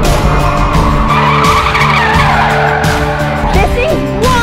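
Tyres of the all-electric Ford Mustang Mach-E 1400 squealing as it slides in a drift, swelling about a second in and breaking into sliding squeals near the end, over background music with a beat.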